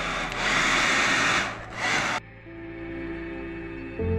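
Hair dryer blowing air across wet epoxy resin to push the white wave layer around, dipping briefly, then cutting off suddenly about two seconds in. Background music follows.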